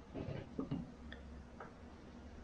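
A few faint, light clicks of a knife being handled and set against a sharpening stone, four or so spread over about a second and a half.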